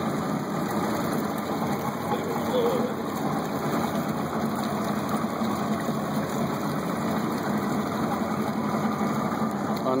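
A boat's engine idling steadily with a low, even hum.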